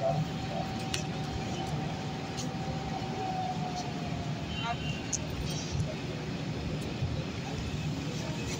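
Outdoor ambience of a steady vehicle engine or traffic rumble with indistinct voices, and a thin high whine that fades out about four and a half seconds in.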